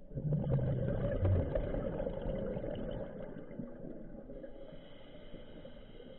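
Scuba diver exhaling through a regulator: a burst of bubbles that starts suddenly, is loudest for the first two seconds or so, then fades away.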